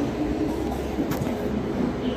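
Passenger coaches of the Duranto Express rolling along the platform: a steady rumble of wheels on the rails, with one sharp click about a second in.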